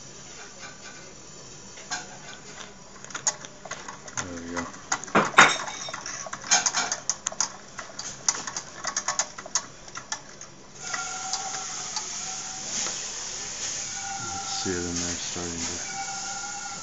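Light metallic clicks and knocks around a Wilesco D10 toy steam engine, with one sharp knock about five seconds in. About eleven seconds in, a steady hiss of steam with a faint whistling tone sets in from the pressurised boiler.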